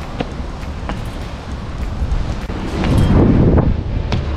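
Wind buffeting an action camera's microphone as a low rumble, swelling in a stronger gust about three seconds in, with a few faint taps.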